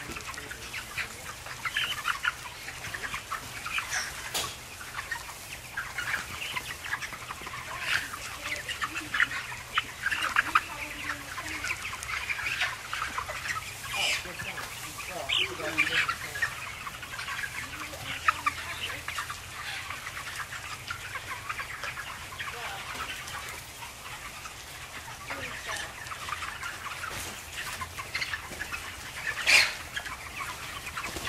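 A house full of Cobb-500 broiler chickens, dense and continuous chirping and clucking, over a steady low hum. One louder call stands out near the end.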